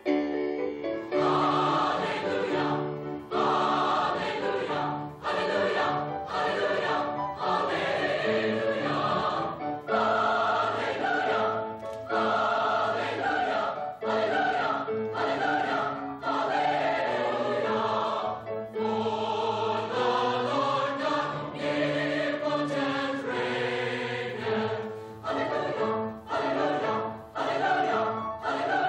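Mixed choir of women's and men's voices singing together in sung phrases with short breaks between them.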